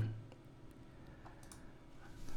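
A few faint, scattered computer clicks, about four, the strongest about one and a half seconds in, in a quiet small room.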